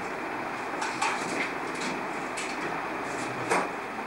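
Steady hiss with a few short, sharp clicks, about a second in and again near the end.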